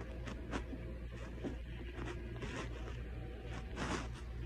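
Steady low rumble of a car on the road heard inside the cabin, with a string of short scratchy rubbing sounds over it, the loudest near the end.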